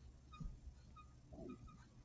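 Near silence: room tone with a few faint, short ticks.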